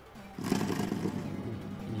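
Portable mini washing machine's spin dryer motor switching on about half a second in and running with a steady hum.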